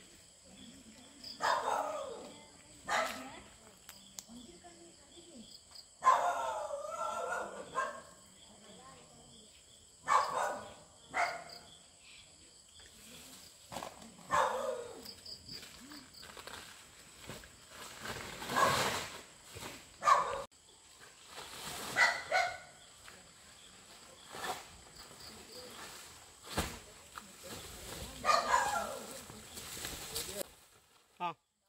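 Dogs barking in scattered bouts, about ten times, over a steady high chirring of crickets.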